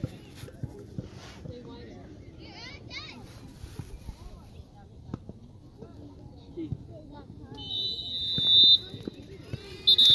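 A referee's whistle blown in one shrill, steady blast of about a second near the end, over low background voices from the sideline.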